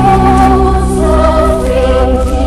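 Music: voices singing a slow sacred song in held notes over a steady low accompaniment.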